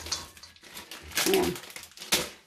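Plastic packet of chocolate chips crinkling as the chips are shaken out into a mixing bowl, with a short spoken "yeah" about a second in.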